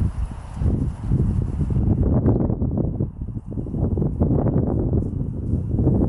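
Wind buffeting the microphone in a steady low rumble. Through it, from about two seconds in, comes a patter of footfalls as a small flock of sheep and a person walk across the grass.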